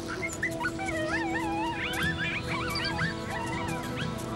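Coyote pups whining and whimpering in high, wavering calls, several overlapping, over background music with long held notes.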